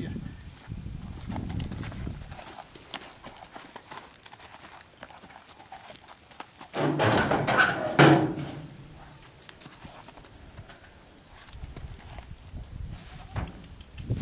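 A saddled horse's hooves clopping and shuffling as it is led beside a stock trailer, with a louder clattering burst about seven seconds in that lasts over a second.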